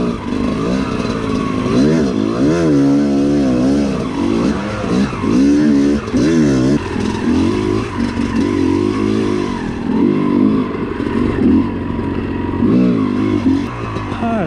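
Yamaha YZ250 two-stroke dirt bike engine under way, revving up and down over and over as the throttle is worked along a rough trail.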